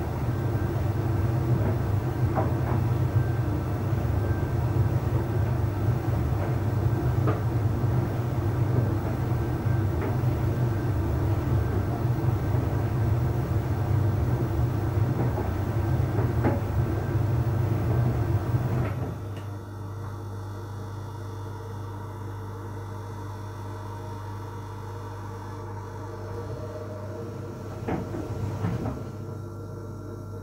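Heat-pump tumble dryer running, its drum turning with a steady low rumble and occasional light knocks of laundry dropping inside. About two-thirds of the way through the rumble stops suddenly, as the drum pauses, and a quieter steady machine hum carries on.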